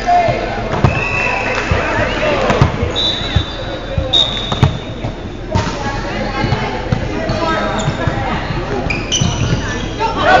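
Volleyball gym: players talking over repeated sharp thuds of volleyballs being hit and bouncing on a hardwood floor, in a large, echoing hall. A few high squeaks are heard, one held for a couple of seconds around the middle.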